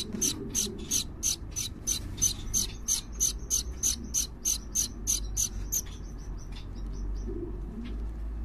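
Gouldian finch nestlings begging: a rapid, even run of high-pitched calls, about three to four a second, that becomes softer and scattered after about six seconds.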